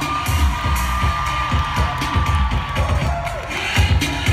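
Loud pop music with a steady beat playing over a concert sound system, with the audience cheering over it.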